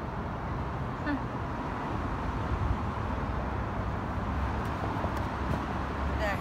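Steady outdoor background noise: a low, irregular rumble with a hiss above it and no distinct events.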